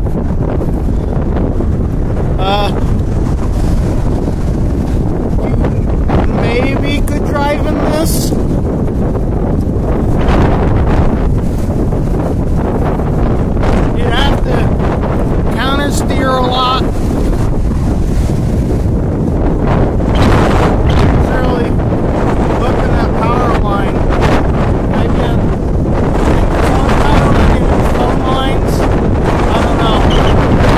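Strong wind gusting up to about 50 mph, buffeting the phone's microphone as a loud, steady low rumble.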